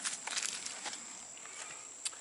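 Faint irregular scuffing and rustling on dry, leaf-strewn dirt, mostly in the first second, then fading to a quiet outdoor background with a steady faint high tone.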